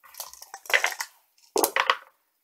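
Six-sided dice rattled in a dice cup and tipped into a cardboard game box, clattering in three short bursts.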